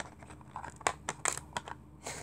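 Small hard-plastic clicks and light rattling as an action figure and its tiny accessories are dug out of a plastic carrying case's storage compartment, with several separate sharp clicks over a faint rustle.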